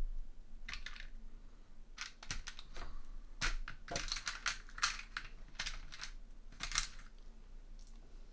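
Board-game pieces and coins clicking against each other and a compartmented plastic tray as they are picked out by hand: a scatter of light, irregular clicks.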